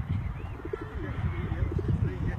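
Pigeon cooing: low, wavering coos over a steady low rumble.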